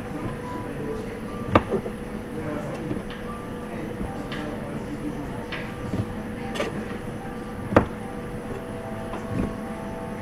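Sashimi knife slicing tuna on a cutting board, with a few sharp knocks of the blade or board, the loudest about a second and a half in and near eight seconds, over steady background hum with faint music and voices.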